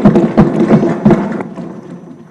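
Legislators thumping their wooden desks in applause: a loud, irregular run of dull knocks that dies away about a second and a half in.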